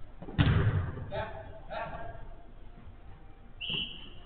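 A loud, sudden thud of the football being struck hard during five-a-side play, followed by two short shouts from players and a brief high-pitched call near the end.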